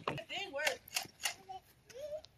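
Children's voices calling faintly in the distance, with several short sharp clicks scattered through.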